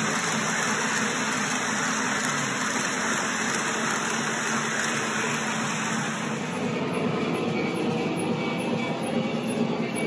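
Lionel O-gauge passenger cars rolling past at high speed on three-rail track, giving a steady rushing wheel-and-rail noise. About six and a half seconds in, the sound turns softer and more distant as the last car goes by, with faint regular clicks from the rail joints.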